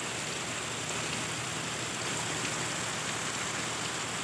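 Steady rain falling on dense garden foliage, an even hiss with no breaks.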